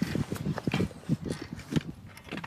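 A rapid, uneven run of light knocks and taps, about nine in two seconds: a shooter's body and rifle knocking against a wooden shooting platform as he settles into the prone position.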